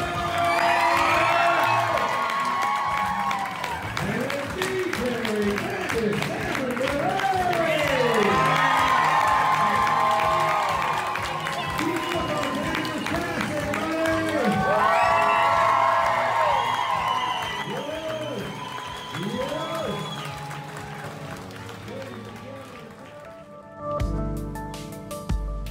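A studio audience applauding and cheering, many voices whooping and screaming over dense clapping, with music playing along. It all fades down over the last several seconds.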